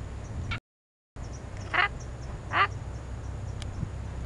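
Mother long-tailed macaque giving two short, harsh, quack-like calls just under a second apart. The sound cuts out completely for about half a second shortly before the calls.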